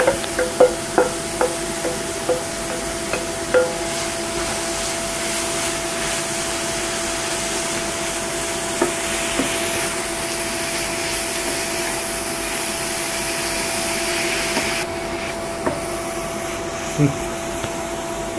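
A spatula tapping several times against a steel bowl to knock grated beetroot out into the pan, each tap with a short metallic ring. Then grated beetroot frying in a nonstick pan, sizzling steadily as it is stirred, with the hiss dropping suddenly near the end. A steady hum from the induction cooktop runs underneath.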